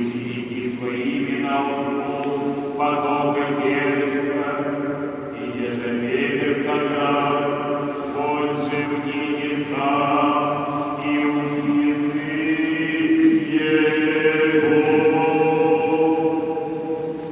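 Unaccompanied Orthodox church choir chanting, with sustained chords that change every second or two.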